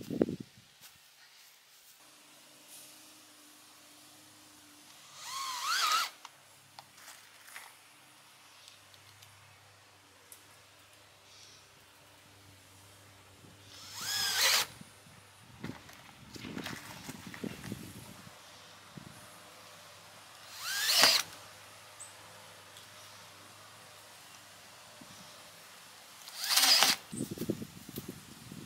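Cordless drill driving screws through a plywood board into wooden posts, in four short runs of about a second each, the motor's pitch rising as each run starts. Light knocks from handling the wood come between the runs.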